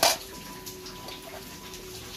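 A brief sharp scrape or clatter as the Hondata K-Pro ECU's metal cover is handled and lifted off. After it comes a steady background hiss with a faint steady hum.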